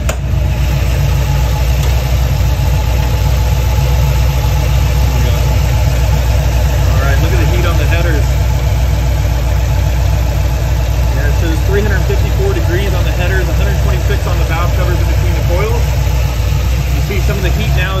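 Car engine idling steadily with the hood open, a continuous low hum; the engine is warm, with coolant flowing through the upper radiator hose.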